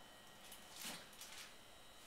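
Near silence: room tone with a few faint, brief rustles or handling sounds.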